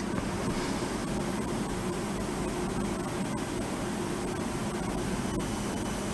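Steady hiss with a low hum from an open live broadcast link, a few faint steady high tones over it. The remote reporter's voice is not coming through.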